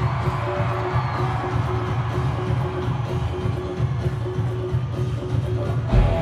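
Live rock concert sound: a large crowd cheering and whooping over a steady held note and low hum from the stage. A loud hit comes at the very end as the band comes in.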